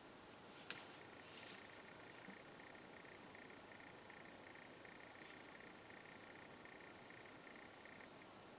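Near silence: faint room tone with a steady, pulsing high-pitched hum and one sharp click just under a second in.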